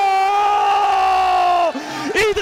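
A football commentator's goal shout: one long held note on a drawn-out vowel, steady and high, that falls away about three-quarters of the way through.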